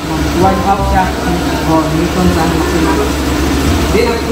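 Speech: a man talking, with a steady low rumble underneath.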